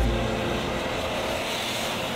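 Opel Astra hatchback driving past close by: a rising rush of tyre and engine noise that peaks near the end.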